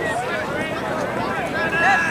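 Several voices calling out at once on a soccer field, overlapping and indistinct: spectators and players shouting during play.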